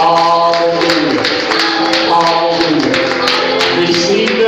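Live gospel praise-and-worship singing with music, held sung notes that glide between pitches, over sharp percussive taps.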